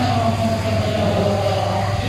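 A man's voice chanting in long held melodic lines over a steady low hum.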